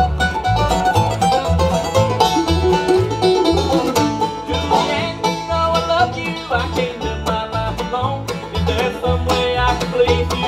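Live acoustic bluegrass band playing an instrumental break: plucked strings carry the lead over a guitar rhythm, with the upright bass plucking a steady beat about twice a second.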